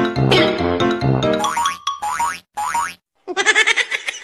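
Bouncy comedy music, then three quick falling cartoon-style swoop sound effects about halfway through. The audio drops out briefly, and a different pitched sound starts near the end.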